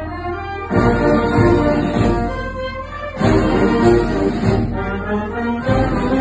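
Amateur wind band playing a march: clarinets, saxophones and brass over a strong bass. Each loud phrase starts after a short dip, the first about a second in and the next near the middle.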